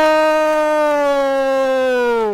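A football commentator's long held goal shout: one loud sustained note that sags slightly in pitch toward the end.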